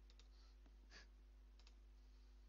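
Near silence: faint room tone with a low steady hum and a few very faint short clicks.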